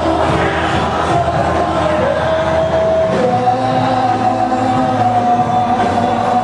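Church worship music: voices singing long held notes over sustained instrumental accompaniment.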